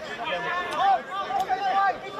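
Several people's voices talking and calling over one another in overlapping chatter. Two short sharp clicks come about two-thirds of a second apart, mid-way through.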